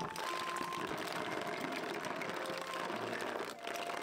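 A basketful of freshwater snails tipped into a plastic basin, the shells clattering against each other and the basin in a dense run of clicks and knocks.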